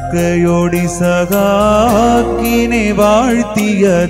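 A church choir sings an Orthodox liturgical hymn. A voice winds through ornamented melodic turns over steady sustained notes.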